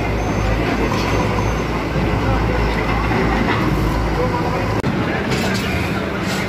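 Diesel engines of backhoe loaders running, with the chatter of a crowd of onlookers over them; the engine sound changes abruptly about five seconds in.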